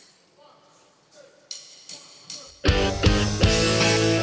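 A live rock band counts in with three sharp clicks about 0.4 s apart. The full band, backed by an orchestra, then comes in loud all at once, with drums, guitar and long held notes.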